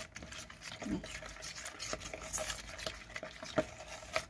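A utensil stirring and scraping a thick yogurt-and-spice marinade in a bowl, with light clicks against the bowl's side and one sharper click near the end.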